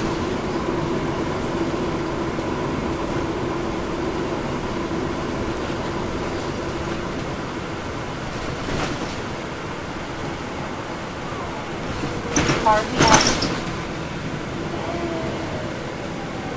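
Inside a moving transit bus with a Cummins ISL9 diesel engine: a steady engine and road hum with a constant mid-pitched tone. About twelve seconds in, a brief cluster of sharp clicks and squeaks rises above it.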